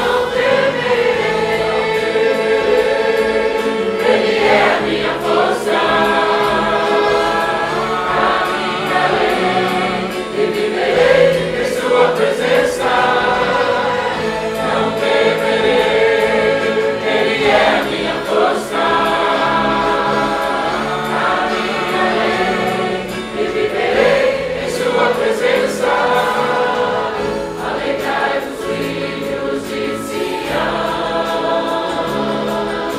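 A group of voices singing a Portuguese-language hymn together, going through its refrain, without a break.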